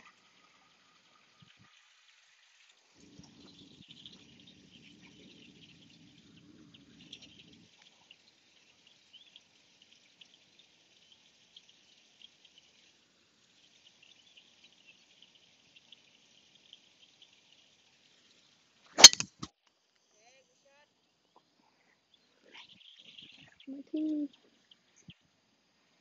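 A golf driver strikes a ball off the tee: one sharp, loud crack about three-quarters of the way through.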